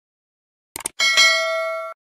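Two quick clicks, then a notification-bell sound effect: a bright metallic ding, struck twice in quick succession, that rings on for almost a second before cutting off.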